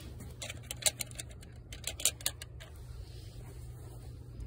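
A quick run of small clicks and taps from handling the painting tools, the sharpest about a second in and again about two seconds in, over a low steady hum.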